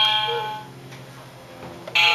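Musical baby toy sounding bell-like chimes: one rings out and fades at the start, and another sounds near the end.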